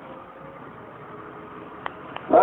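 A steady low hiss of background noise with faint held tones, broken by a short click near the end.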